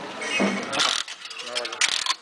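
Gumball machine's metal crank being turned, ratcheting with clicks, then a clatter near the end as a gumball drops into the delivery chute.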